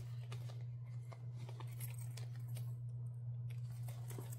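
Faint rustling and a few soft ticks as a quilted fabric project folder is handled and turned over, over a steady low hum.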